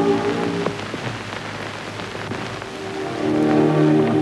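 Sustained orchestral chords from a 1930s film soundtrack. They fade in the middle and swell again near the end, over a steady hiss and scattered crackle from the old optical soundtrack.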